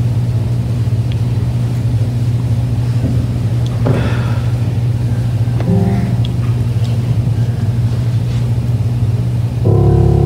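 A low held keyboard note drones steadily, with a few soft higher notes sounding in the middle. Just before the end, full chords come in louder.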